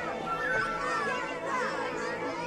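A crowd of adults and children chattering and calling out together, with excited children's voices among them and music faint beneath.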